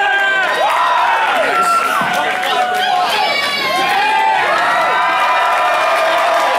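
Concert crowd cheering and whooping, many voices shouting and yelling over one another at a steady, loud level.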